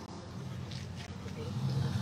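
Faint background of an outdoor gathering: a low murmur of voices over a steady low rumble.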